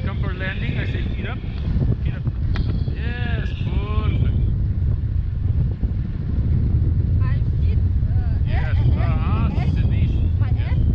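Wind rushing over the microphone of an action camera on a selfie stick in a tandem paraglider flight, a steady low rumble that gets louder about halfway through, with voices calling out over it now and then.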